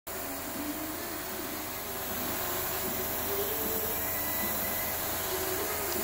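Gravity-feed airbrush hissing steadily with compressed air as it sprays black paint.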